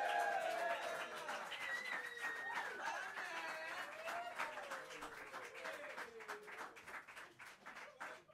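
Small audience clapping and cheering, with wavering shouts and whoops over the applause. It slowly dies down.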